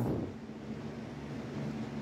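A steady low background hum under a faint hiss, after the tail of a spoken word at the very start.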